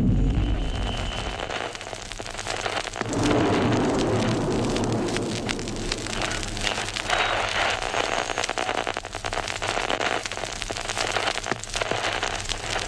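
Dense crackling hiss full of small pops. It opens with a deep rumble that dies away over the first second or two.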